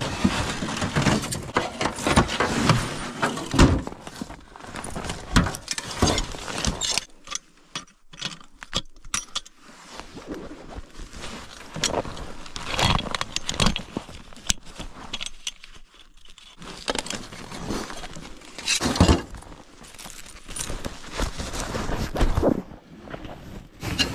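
Wire snares and metal trapping gear rattling and clinking as they are handled, in irregular bursts with short quiet spells between.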